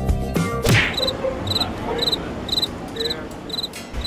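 Background music ending within the first second, then a pedestrian crossing signal sounding a short, high chirp about twice a second over street noise.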